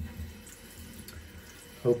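Bathroom sink tap running, a steady hiss of water.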